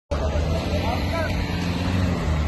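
Motor vehicle engines running with a steady low drone, while faint voices call out in the background.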